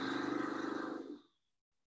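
A person fluttering the lips in a voiced lip trill: one steady 'brrr' that stops a little over a second in.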